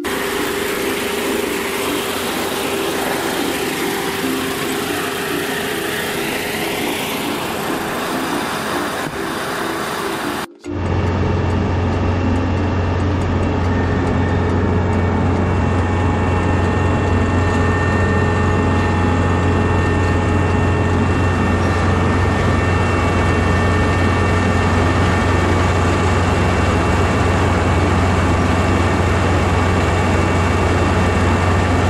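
Kubota ER470 combine harvester running steadily as it cuts rice. For the first ten seconds or so it is heard from beside the machine as an even mechanical noise. After a brief break it is heard from the cab, where a steady low engine hum dominates.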